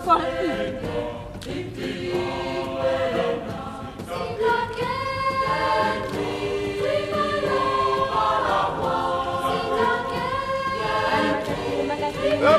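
A group of voices singing together in long held notes.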